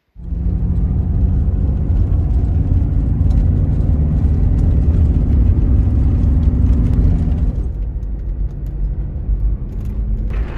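Van cab noise while driving a gravel road: a steady low rumble of engine and tyres, with scattered small ticks of gravel striking the body. The upper part of the noise eases off a little near the end.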